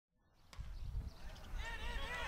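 Sound fades in from silence to low rumbling from wind on the microphone, with distant voices calling out across the field from about a second and a half in.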